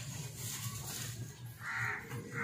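A crow caws once near the end, over a steady low hum.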